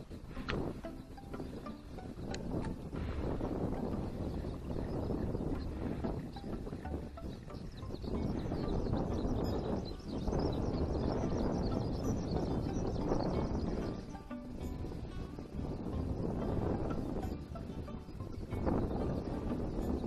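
Wind buffeting the microphone outdoors, a low rumble that swells and eases in gusts every few seconds.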